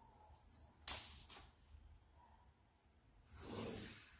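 Quiet pencil-on-paper sounds as a line is drawn along a ruler: a sharp tap about a second in, a few faint ticks, and a soft scratching stroke near the end.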